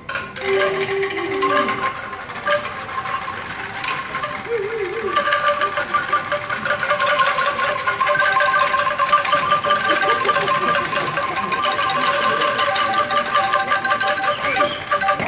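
Several bamboo angklungs shaken together: a fast rattling tremolo of hollow pitched tones. It is sparse at first and thickens into a sustained chord of several notes about five seconds in.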